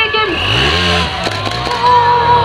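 Trials motorcycle engine revved once, rising then falling in pitch, with people shouting long, drawn-out calls around it.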